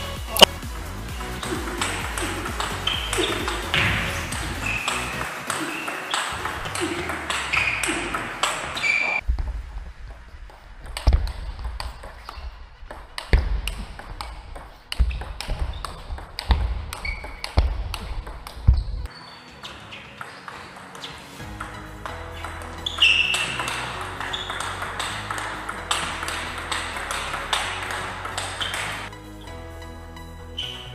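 Table tennis rallies: the celluloid ball clicking off paddles and bouncing on the table again and again, over background music.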